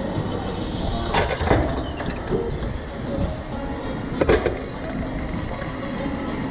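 Steady low rumble of the SlingShot capsule being lowered back down to the loading platform, with faint music in the background. Two brief louder sounds come about a second in and about four seconds in.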